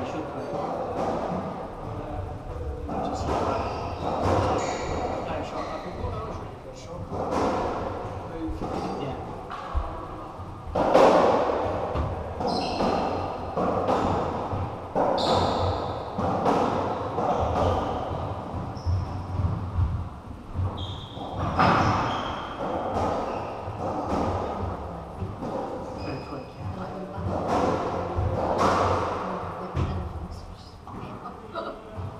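Racketball rally on a squash court: the ball is struck by rackets and thuds off the walls and floor in sharp, echoing hits, over a steady murmur of indistinct voices.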